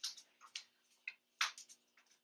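A few faint, irregularly spaced clicks and taps: a dog's nails and a person's steps on a hardwood floor.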